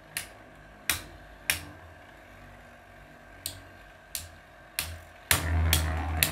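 Two metal-wheeled Beyblade spinning tops whirring in a plastic stadium, with sharp clacks each time they strike each other, six times spread out over the first five seconds. About five seconds in, the sound becomes louder and continuous, with quicker clacks as the tops stay in contact.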